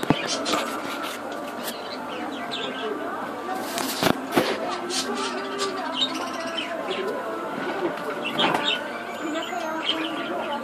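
Busy shop background: indistinct voices with birds chirping, and a couple of sharp knocks about four seconds in.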